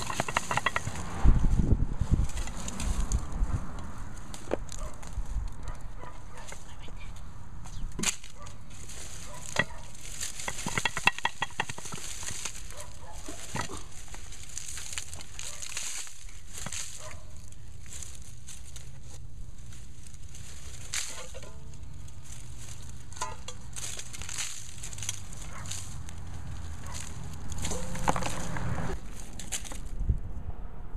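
Dry Jerusalem artichoke stems, leaves and roots crackling and rustling, with soil scraping, as the root ball is pulled and broken out of a clay flower pot by hand. It goes in many sharp irregular crackles, with a few heavier bumps from handling about a second or two in.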